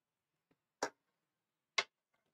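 Two short, sharp clicks about a second apart over near silence.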